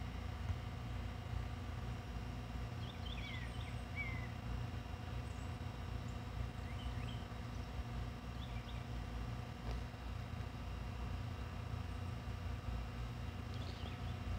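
A steady low rumble with faint, scattered chirps from birds, a handful of short calls between about three and nine seconds in.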